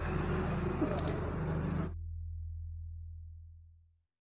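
Shop room noise with faint background murmur that cuts off abruptly about two seconds in. A low hum is left, and it fades away to silence.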